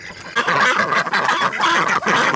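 A flock of domestic ducks quacking loudly, many calls overlapping, starting about half a second in.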